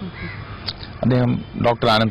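A man speaking, starting about a second in after a short pause, with a crow cawing in the background.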